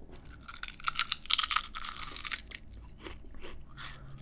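A folded Lay's Classic potato chip being bitten and chewed close to a microphone. It gives a dense burst of crackly crunching from about half a second in for nearly two seconds, then sparser, softer chewing. The crunch is light and crisp, with "no resistance" in the chip.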